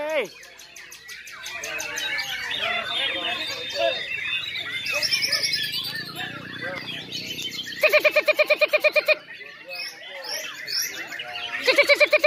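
White-rumped shamas (murai batu) singing together in a contest line-up, a dense mix of chirps, whistles and trills. About eight seconds in comes a loud, fast run of repeated harsh notes lasting a little over a second.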